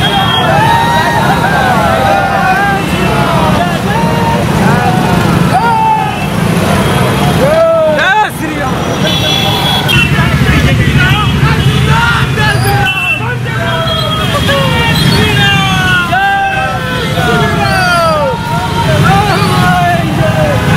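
Many motorcycle engines running in a slow-moving procession, with a crowd shouting over them.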